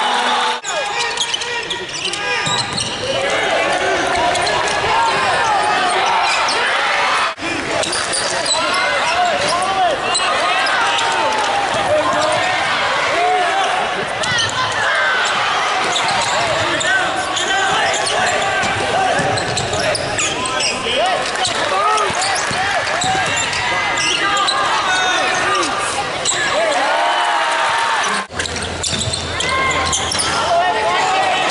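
Basketball game sound in a large arena: a ball bouncing on the hardwood court, sneakers squeaking, and the voices of players and spectators. The sound breaks off briefly twice, about seven seconds in and near the end.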